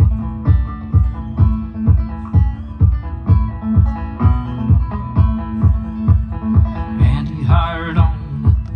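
A banjo picked steadily in a country song's introduction, over a low thump about twice a second that keeps the beat. A man's singing voice comes in near the end.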